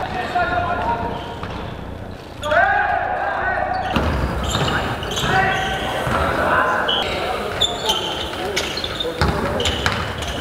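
Basketball game sounds in a sports hall: the ball bouncing on the court amid players' voices calling out, with short high squeaks. There is an abrupt change about four seconds in.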